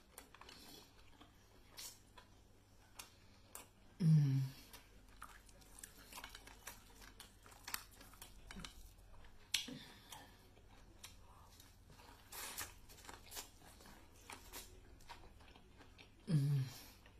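Close-miked chewing and wet mouth smacks of a person eating a seafood boil by hand, with scattered small clicks and smacks throughout. About four seconds in comes a short hummed voice sound falling in pitch.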